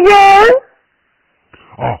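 A young child's voice, loud and close, answering in one long drawn-out sound that rises in pitch and stops about half a second in. Near the end a man's voice begins, thin as if heard over a telephone line.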